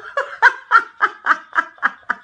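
A person laughing in a fast run of short, high-pitched bursts, about three or four a second.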